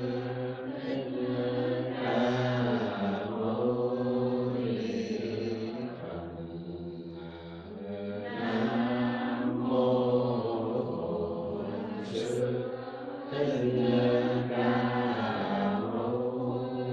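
A congregation of men and women chanting a Vietnamese Buddhist liturgy together in unison. The chant runs in long held phrases with brief breaks for breath.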